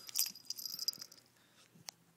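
Small metal pieces jingling and rattling in quick light clicks for about the first second, then fading out, with one sharp click near the end.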